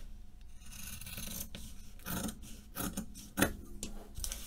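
Scissors cutting through fabric: a run of blade snips and the rasp of the cloth being sheared, with one sharper snap about three and a half seconds in.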